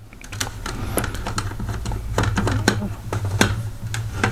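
Small screwdriver turning screws out of a plastic toy's casing: a run of irregular light clicks and ticks, over a low steady hum.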